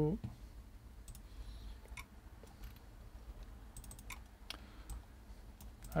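Scattered light clicks of a computer mouse, some single and a few in quick little groups, over a low steady hum.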